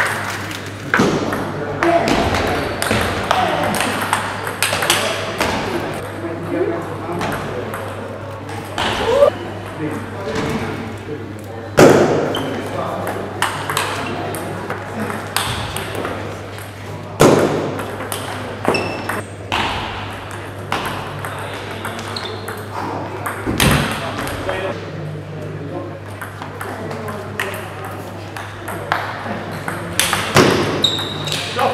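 Table tennis rallies: the ball clicking sharply off the players' bats and the table in quick back-and-forth strokes, with short gaps between points.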